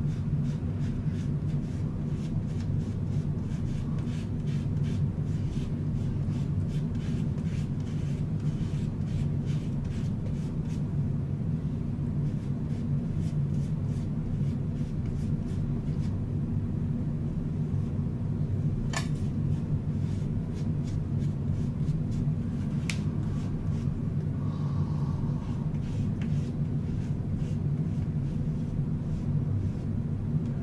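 Makeup puff rubbing BB cream and concealer across the skin close to the mic, a run of faint quick swishing strokes that thin out after mid-way. A steady low hum runs underneath and is the loudest thing, with two sharp clicks later on.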